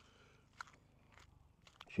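Faint clicks and light scraping of a plastic fork scooping thick mac and cheese in a small takeout cup.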